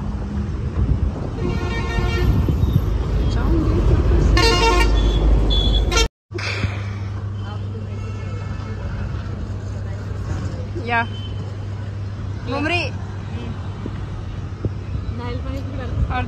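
Road traffic with vehicle horns honking twice in the first few seconds. After a sudden break, a steady low hum continues under a few brief voices.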